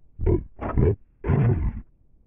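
Three short, low, growl-like bursts, the last the longest: the soundtrack of a Cadbury Creme Egg advert run through video effects that distort it.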